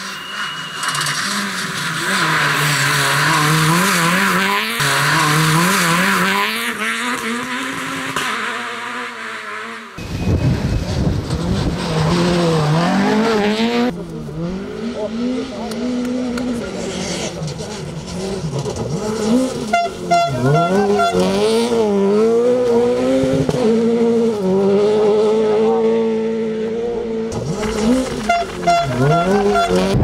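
Peugeot 208 R2 rally car's 1.6-litre four-cylinder engine revving hard on a gravel stage, its pitch climbing and dropping back again and again as it shifts through the gears.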